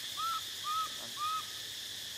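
Baby macaque giving short high coo calls, three in quick succession about half a second apart, each rising then falling in pitch, over a steady high buzz of insects.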